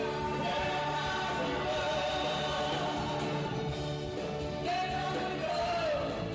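A woman and a man singing a Romanian pop song live, with a band accompanying them.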